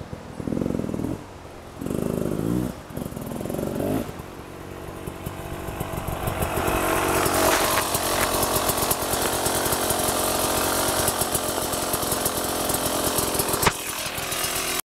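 Beta 300RR two-stroke enduro motorcycle engine revving in three short bursts, then growing louder as the bike comes right up to the microphone, where it keeps running. A sharp knock comes near the end.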